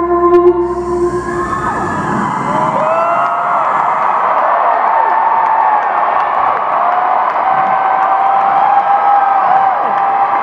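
A rock band's last held chord rings out and stops about a second and a half in, and a large arena crowd cheers, screams and whistles.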